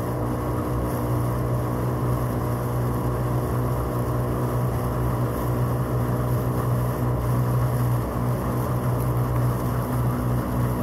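Outboard motor of a boat running alongside a rowing shell at a steady speed, a constant low drone with no change in pitch, over the rush of water and wind.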